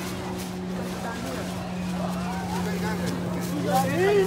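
Faint voices talking at a distance over a steady low hum.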